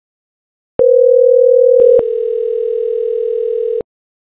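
VoIP softphone call-progress tone, a ringback heard while an outbound call is being placed. It is one steady low tone of about three seconds with a short break near the middle, and it cuts off sharply.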